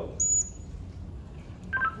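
Handheld two-way radio beeps: a short, high, piercing tone just after the start, and a brief stepped beep falling in pitch near the end as the radio is keyed to talk.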